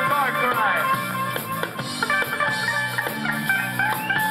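A ska band playing live and loud, with drum kit, guitar and bass. A quick run of sliding notes comes in the first second over the steady bass line.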